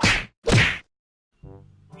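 Two short swish sound effects from an animated outro, about half a second apart, then a faint pitched sound about a second and a half in.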